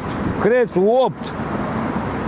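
A man's voice saying one short word, over a steady rushing background noise that carries on alone through the second half.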